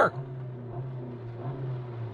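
A 1.5-litre turbocharged four-cylinder car engine revved in neutral, heard from inside the cabin: a steady low purr held at raised revs, stepping slightly higher in pitch about a second in.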